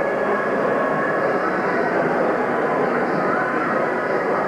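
Steady, indistinct chatter of many people in a large hall.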